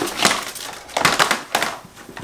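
Cardboard gift boxes of bath bombs being handled and shuffled about: three short bursts of papery rustling and light knocking.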